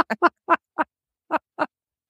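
Laughter in short, separate bursts that trail off after about a second and a half.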